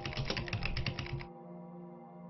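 Computer keyboard typing: about a dozen keystrokes in quick succession, stopping a little over a second in. Soft ambient music with sustained tones plays underneath.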